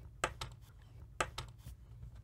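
A handful of light clicks and taps from a small plastic thermometer-hygrometer and its stand being handled, two of them sharper than the rest.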